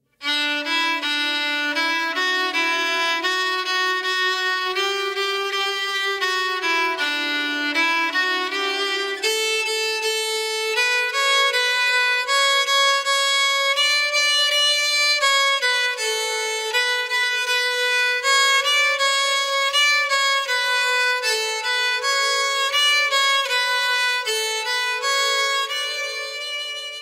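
Unaccompanied solo violin playing a graded exercise from an introductory violin method: a single melodic line of evenly paced notes. It stays in a lower register for about the first nine seconds, then moves up to a higher register for the rest.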